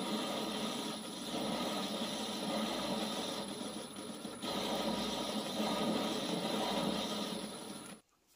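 Metal lathe running, its cutting tool turning a metal adapter blank and peeling off swarf over the steady whirr of the spindle drive, with brief dips about a second in and just after four seconds.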